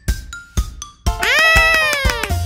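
A few short, bright plinking notes, then about a second in a loud, high, meow-like cartoon voice exclamation that rises quickly and slowly falls away, over light children's music.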